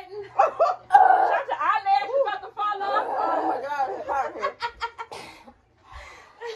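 Women's voices crying out wordlessly and laughing as they react to the burn of the spicy noodles, with a few sharp breathy puffs near the end before a brief dropout to silence.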